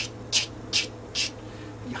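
A man imitating a nail gun with his mouth: four short, sharp hissing bursts in quick succession.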